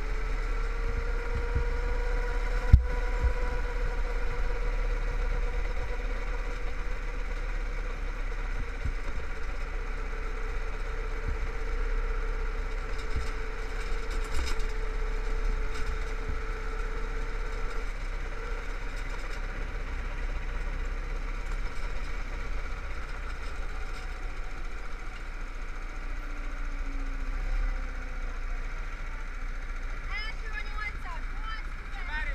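Go-kart engine running as the kart laps, its note holding fairly steady over a heavy low rumble, with one sharp knock about three seconds in. Past the middle the engine note fades, and near the end a lower, falling note is heard as the kart slows to a stop.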